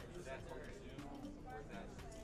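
Indistinct chatter of several people in a large hall, with scattered light clicks and knocks.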